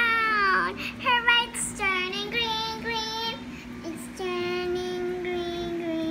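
A young child singing without words: short sliding and falling notes, then one long held note from about four seconds in.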